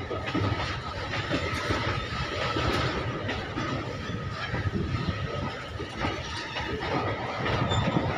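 Loaded freight wagons of a goods train rolling past at steady speed: a continuous rumble of wheels on rail with an irregular clatter as the wheels cross rail joints, and a thin steady whine above it.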